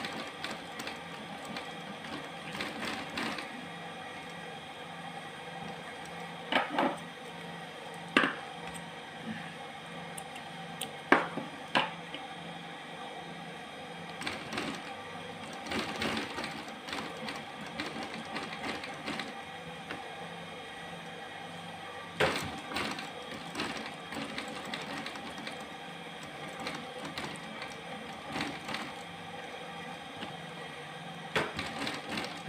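Industrial sewing machine stitching quilted faux-leather (skai) bag panels together, a steady machine hum throughout. A few sharp clicks and knocks break in at intervals.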